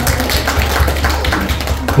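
Many hands clapping in applause, a dense run of claps over a steady low hum.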